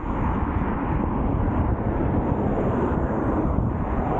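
Steady rush of wind on the microphone while riding an electric unicycle, mixed with traffic noise from the road alongside.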